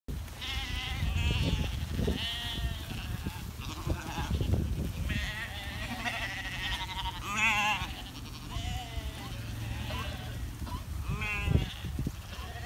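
A large flock of sheep bleating over and over, many wavering calls overlapping, as the flock is driven past at a hurry, over a constant low rumble.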